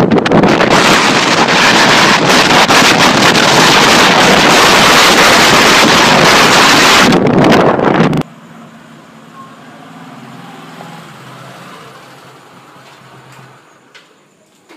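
Loud wind buffeting the microphone with engine and road noise while riding a motorcycle at speed, cut off abruptly about eight seconds in. After that there is a much quieter low, steady engine hum that fades near the end.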